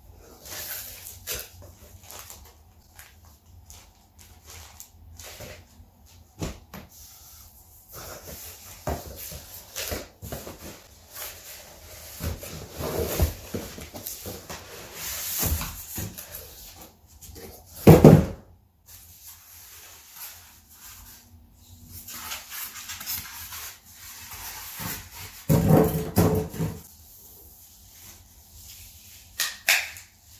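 Hands unpacking a centre speaker: cardboard box flaps and sides scraping, foam packing end caps rubbing, and plastic wrapping crinkling, with scattered rustles and knocks. A loud brief knock comes just past halfway, and a pitched squeak lasting about a second comes near the end.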